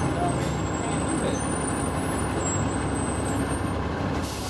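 City bus engine idling at the curb: a steady, even running noise with a faint, wavering high whine above it.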